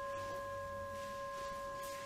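The ring of a singing bowl, sustaining and slowly fading: three steady, bell-like tones sounding together.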